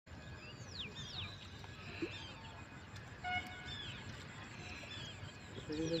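Birds calling outdoors, a series of sharp falling whistles repeated throughout, with one short pitched call about three seconds in, over a steady low outdoor rumble. A man's voice begins right at the end.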